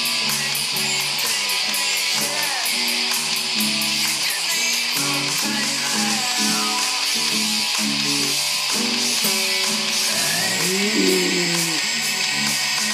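Classical-style acoustic guitar strummed in a quick, steady chord rhythm. Near the end a singing voice glides up and then down over the chords.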